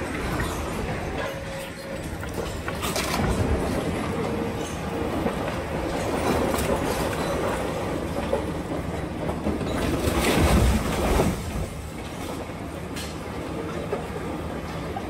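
Demolition of a concrete building: a demolition excavator's grapple tearing at the structure, making continuous grinding and scraping, with loud crashes of breaking concrete and debris about three seconds in and again around ten to eleven seconds in.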